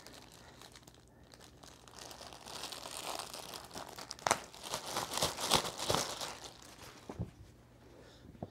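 Clear plastic packaging crinkling and rustling as it is opened and a rug is pulled out of it, starting about two seconds in, with a sharp crackle near the middle.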